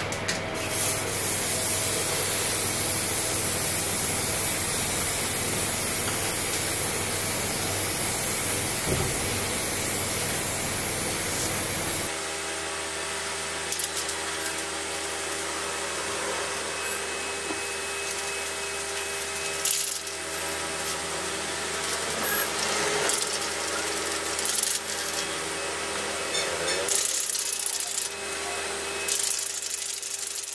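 Paint being sprayed onto a trunk's edges, a steady hiss for about the first twelve seconds. After that the sound changes to a steady hum with scattered clicks and rattles.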